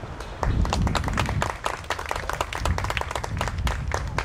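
A small group of people applauding, with dense, irregular hand claps starting about half a second in.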